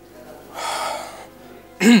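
A short, breathy sigh about half a second in, over soft sustained background music, with a voice starting to speak near the end.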